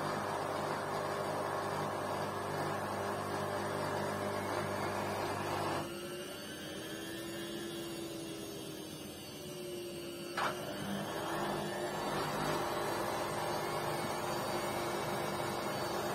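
LG front-loading washing machine mid-wash: the drum turns steadily, stops about six seconds in with a gliding whine, gives a sharp click a few seconds later, then starts turning again.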